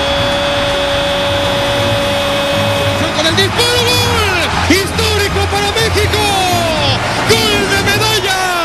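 A Spanish-language football commentator's goal call: one long held 'gooool' shout on a single high pitch lasting about three seconds, then more excited yelling rising and falling in pitch, over music.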